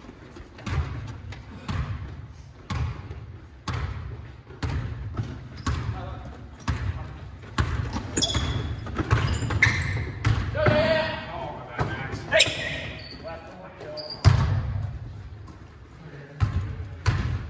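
A basketball dribbled on a hardwood gym floor, bouncing about once a second. In the second half, sneaker squeaks and players' calls are heard.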